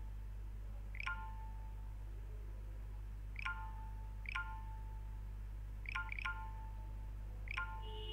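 Short electronic notification chimes, each a quick chirp followed by a brief fading tone, sounding about six times at irregular intervals, two of them close together. A steady low hum runs underneath.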